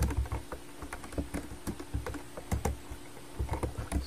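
Typing on a computer keyboard: irregular key clicks, several a second, with a short pause about three seconds in.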